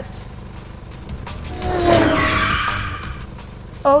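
Sound effect of a speeding car passing: it swells about a second and a half in and fades out by about three seconds, over background music.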